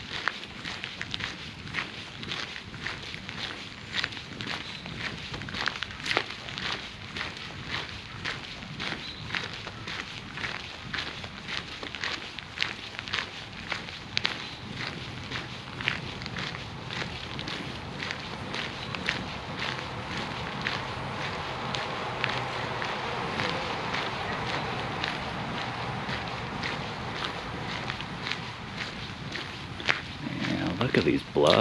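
Footsteps walking steadily along a trail, about two steps a second. A steady hiss in the background grows louder from about halfway through.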